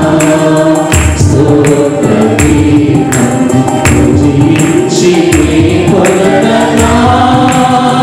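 Mixed church choir singing a Telugu Christian worship song together, sustained sung lines over a steady percussion beat.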